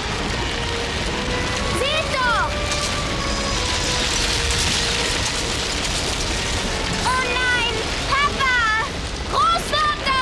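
Cartoon sound effects of a rockslide: a steady rushing rumble of falling rock and dust under orchestral film music, with short frightened cries from the characters about two seconds in and several more near the end.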